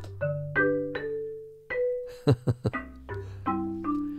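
Pianoteq 8 Pro's physically modelled marimba played as a short phrase: mallet-struck notes ringing and fading, over a low note held beneath them, with a quick flurry of strikes about halfway through.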